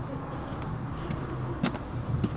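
Steady low rumble, with one sharp footstep of a hard-soled shoe on the pavement late on.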